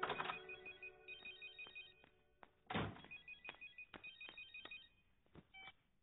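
A mobile phone ringing with a high electronic beeping ring in two groups of short bursts. A dull thump comes just under three seconds in.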